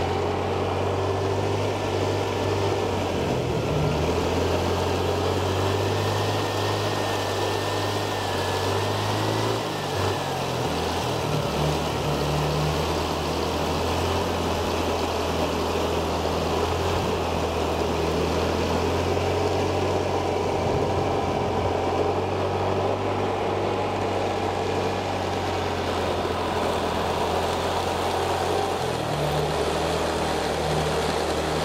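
An engine running steadily, its pitch stepping up and down several times as its speed changes.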